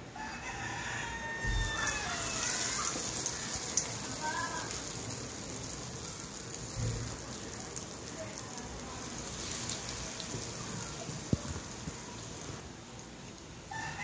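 Medu vada batter frying in a wok of hot oil, a steady sizzle that fades out near the end. A bird calls in the background twice in the first five seconds.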